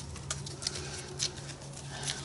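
Faint taps and rustles of thick, glued paper-covered puzzle pieces being pressed into place by hand, a few separate ticks over a steady low hum.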